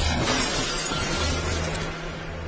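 Truck windshield glass shattering as steel rebar smashes through it, in a film soundtrack. It is loudest right at the start and dies away within about half a second, over a low rumbling music bed.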